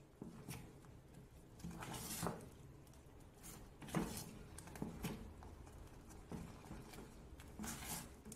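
Wooden spoon stirring a thick white sauce in an aluminium saucepan: faint scraping with a few soft knocks at irregular intervals, about one every second or two.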